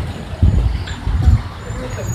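Outdoor street background noise with traffic, and two low rumbling surges, about half a second in and just past one second.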